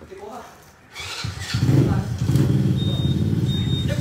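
An engine starts running about a second in, loud and low with a fast, even pulse, and keeps going; a thin high tone sounds briefly near the end.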